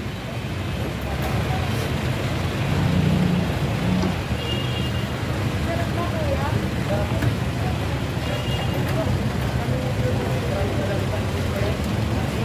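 Busy street ambience: a steady low rumble of road traffic, with faint, scattered voices of people nearby.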